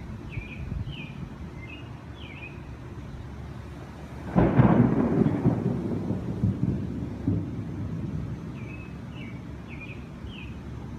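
A thunderclap: a sudden crack a little over four seconds in that rolls on and fades away over the next few seconds.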